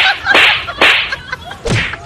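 Four sharp slapping hits in quick succession, each a whip-like crack, as one man strikes another in a staged fight: the first three close together, the last just under a second later.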